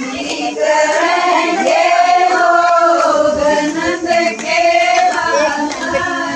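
A group of women singing a Haryanvi devotional bhajan together, in a melody of long held notes.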